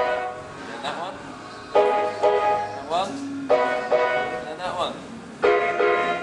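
Chords played on a two-manual electronic keyboard, struck about every second and three-quarters, each ringing on and fading away, with short rising runs of notes between some of them.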